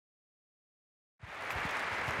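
Silence, then audience applause starts abruptly just over a second in.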